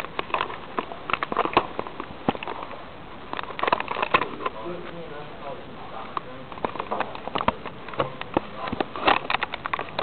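Handling noise on a small camera's microphone: an irregular run of clicks, knocks and crackles as the drone camera and its foam padding and tape are handled, with faint voices in the room behind.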